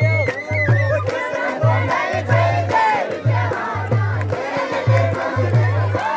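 Loud Paddari dance song with a steady repeating bass beat, with a crowd of young people shouting over it.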